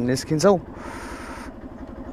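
Single-cylinder Yamaha R15 V2 motorcycle engine idling steadily, with a short hiss about a second in.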